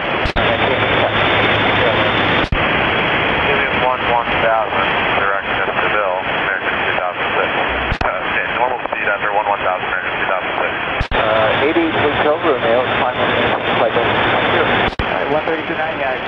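Air traffic control radio feed with loud steady static, faint garbled voice transmissions under it, and sharp clicks where transmissions key on and off.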